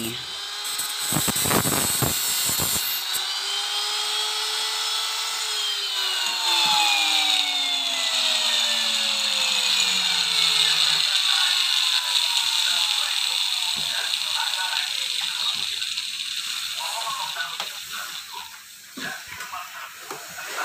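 Electric angle grinder cutting wire mesh: its whine climbs briefly, then falls away steadily over several seconds as it winds down, with a steady high-pitched hiss.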